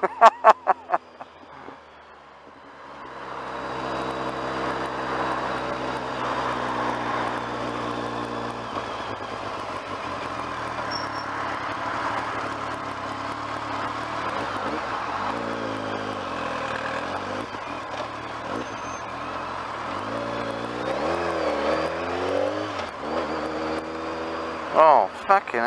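BMW motorcycle engine running under way with wind and road rush, coming up about three seconds in. Its note holds steady, then dips and climbs again twice, about halfway through and near the end, as the bike eases off and pulls away in slow traffic.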